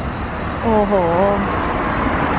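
Steady street traffic noise from cars and a bus running along the road, with a faint steady high whine.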